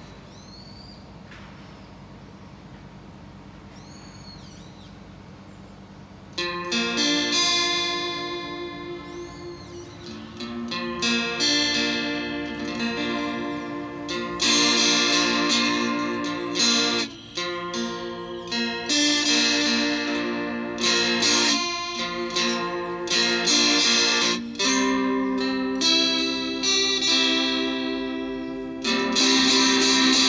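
Acoustic-electric guitar played fingerstyle in a blues piece. After a quiet opening it starts about six seconds in with picked single-note runs over bass notes.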